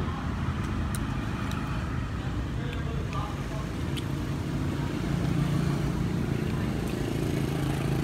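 Street ambience: a steady rumble of road traffic with background voices and a few light clicks. About five seconds in, a low engine hum grows louder.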